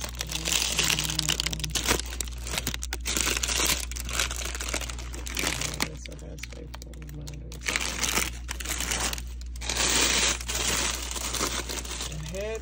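Clear cellophane gift wrap crinkling and crackling irregularly as it is handled.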